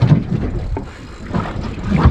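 Wind buffeting the microphone aboard a small boat at sea, with water noise and a knock at the start.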